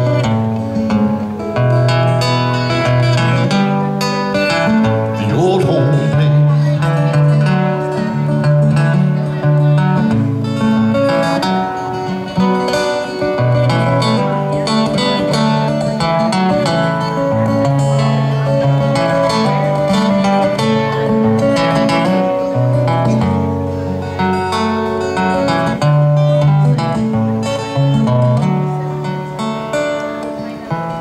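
Acoustic guitar played solo in an instrumental break of a country song: a steady run of picked melody notes over bass notes and strums.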